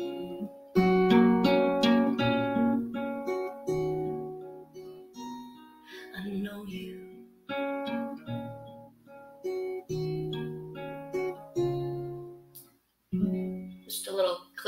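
Acoustic guitar playing alone at the close of a song: picked and strummed chords that ring out and fade, with short pauses between phrases. A last chord comes shortly before the end.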